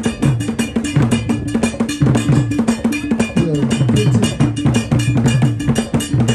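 Percussion music carried by a fast, steady metal bell pattern over drums, with low pitched notes running underneath.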